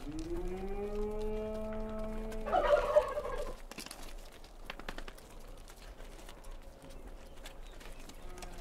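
Goat bleating: one long, steady-pitched call that turns louder and rougher about two and a half seconds in, then dies away to faint clicks.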